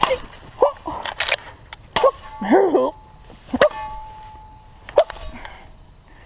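Cane knife chopping into a small tree: about five sharp swishing strikes roughly a second apart, with short shouts of effort among the blows.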